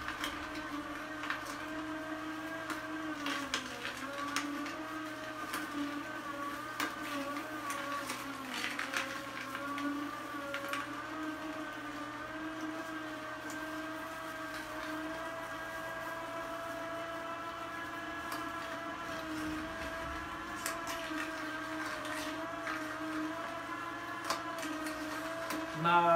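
Vertical slow juicer's motor running with a steady, slightly wavering hum while carrot sticks are fed in, the auger crushing them with scattered sharp cracks and crunches, most of them in the first half and again near the end.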